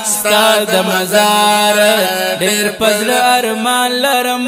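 Wordless vocal chanting and humming of a Pashto naat: a melody that moves in steps over a steady low drone.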